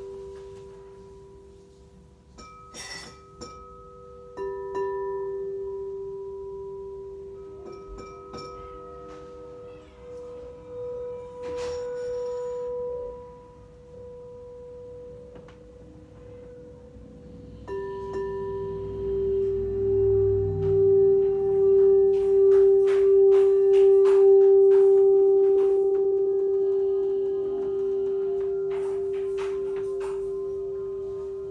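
Quartz crystal singing bowls ringing with long, steady pure tones, fresh notes starting suddenly a few times as bowls are struck. From just past halfway, one bowl's low tone swells loud in slow pulsing waves and then fades gradually, with a few light clicks along the way.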